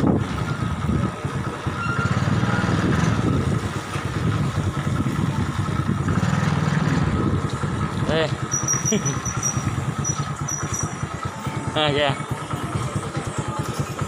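Motorcycle engine running steadily while being ridden, its low rumble rising and falling slightly.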